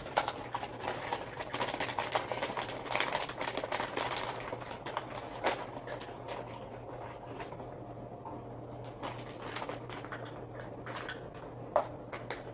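Plastic bag of shredded cheddar crinkling and rustling as a hand digs into it and scoops cheese with a measuring cup, the crackles busiest in the first half and thinning out later.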